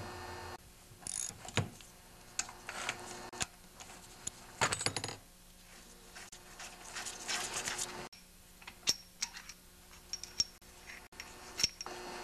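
Scattered light metallic clicks and clinks with some rustling as a small engine and hand tools are handled on a workbench, with a busier run of clinks about four to five seconds in.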